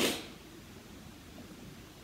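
A short breathy hiss, like a quick puff of breath, right at the start, dying away within a fraction of a second, then quiet room tone in a small room.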